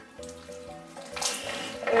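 Wet squelching and squishing of sticky glue slime being squeezed and kneaded by hand in glass bowls, growing louder from about a second in, over soft background music.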